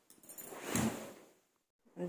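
Rustling handling noise, a soft swish that swells and fades over about a second, then a brief silence.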